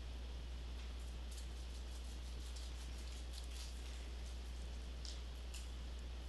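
Faint scattered ticks and clicks of pliers pinching an LED's thin wire lead, several in the middle and two more near the end, over a steady low hum and hiss.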